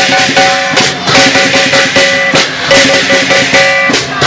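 Chinese lion dance percussion: a drum beaten with clashing cymbals and gong in a steady driving rhythm, about two to three crashes a second, with metallic ringing between the strikes.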